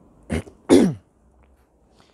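A man clearing his throat: a short first burst, then a longer, louder one that falls in pitch.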